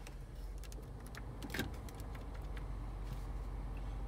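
A few light clicks from the climate control panel of a 2008 Cadillac DTS as the system is switched on, the sharpest about one and a half seconds in, over a steady low cabin hum that slowly grows louder.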